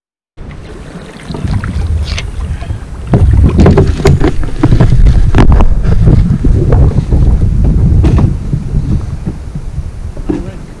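Canoe being paddled, heavy wind buffeting the camera microphone as a loud low rumble, with irregular sharp knocks from the paddling. The sound starts abruptly about half a second in and grows louder about three seconds in.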